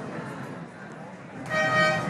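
Faint open-air ambience, then a steady held horn-like note with many overtones starting about a second and a half in.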